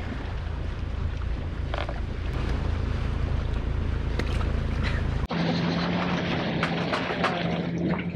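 Wind buffeting the microphone on a sailboat deck, a steady low rumble over sea noise. About five seconds in it changes abruptly to a steady low hum with scattered clicks.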